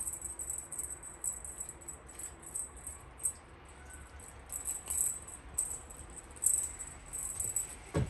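Cat wand toy's ribbon lure rattling and jingling in quick, irregular bright bursts as a cat grabs, bites and bats at it.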